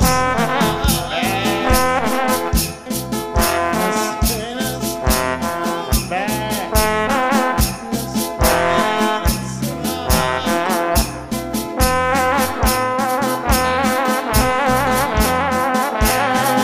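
Instrumental band music with brass horns playing a melody over a steady, driving bass and percussion beat, with no singing.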